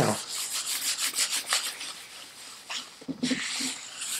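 Paper towel rubbing and wiping across a workbench top in quick, uneven scrubbing strokes.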